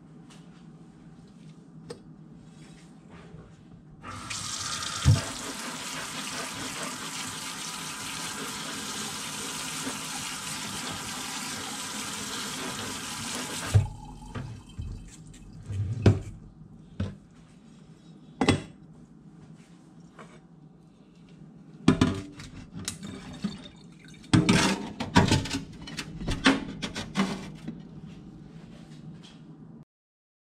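Kitchen tap running steadily into a stainless steel sink for about ten seconds, the light rinse that keeps newly planted popcorn seeds moist until they root into the growing medium. Then a string of sharp knocks and clinks as a ceramic plate and the steel sprouter tray are handled against the sink.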